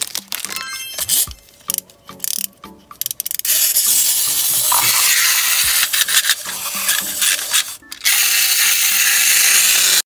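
Clockwork mechanism of a wind-up chattering-teeth toy whirring and rattling, starting about a third of the way in and running on with one short break near the end. Before it, a few crinkles and clicks from a candy-bar wrapper being handled.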